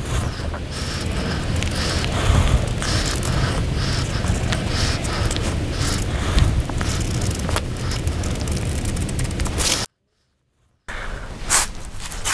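Scratching and rustling as a Sharpie marker is drawn around the edge of a paper template on a wooden block, over a steady low rumble. The sound cuts out completely for about a second near the end.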